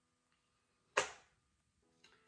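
A single sharp hand clap about a second in, dying away quickly, with near silence around it.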